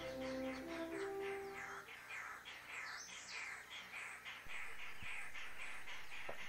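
Dawn bird chorus: one bird repeats a short chirp several times a second over fainter calls. Film music fades out in the first two seconds.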